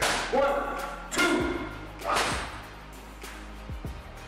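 Three sharp, whip-like cracks about a second apart in the first half, each ringing briefly, over background music with a low beat.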